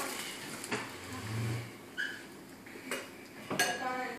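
Faint clinks and light knocks of plates and cutlery on a dining table, a handful of separate strikes, one ringing briefly about halfway through.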